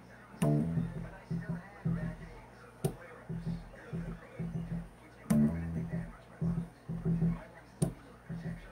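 Solo bass guitar playing a repeating riff of short plucked low notes. About every two and a half seconds a sharp percussive click stands out, twice with a loud ringing note.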